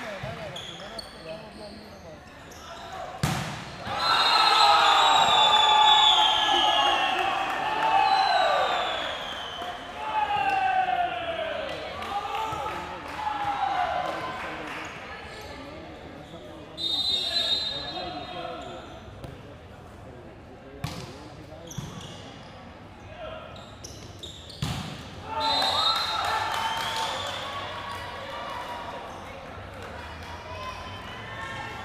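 Volleyball rally: a sharp smack of the ball about three seconds in, then about ten seconds of crowd and players shouting and cheering, echoing in a large hall. Two more sharp ball hits come later, the second followed by another burst of shouting.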